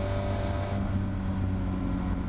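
Caterham Seven race car's engine at full speed on a straight, heard from the open cockpit as a steady drone mixed with wind rush. The higher part of the rush drops away just under a second in.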